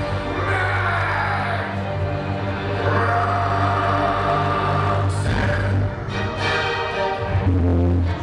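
Electrotango music playing, with sustained deep bass notes under a layered melody.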